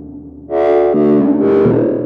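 Buchla Music Easel synthesizer sounding a short run of bright, gritty notes: a fading tail, then about half a second in a loud note that steps through three or four pitches before trailing off. The notes are driven by signals from an Asplenium fern wired to the synth through electrodes on its leaves.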